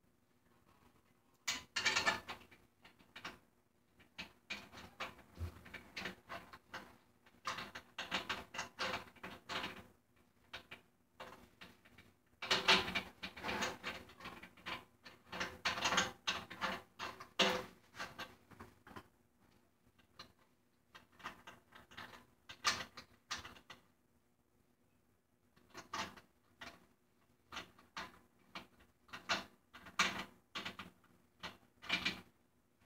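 Metal hardware of a snare drum being handled while a new head is fitted: irregular clicking, scraping and rattling of the hoop, lugs and tension rods in bursts with short pauses.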